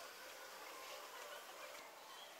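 Near silence: faint room noise, with no distinct knocks or handling sounds.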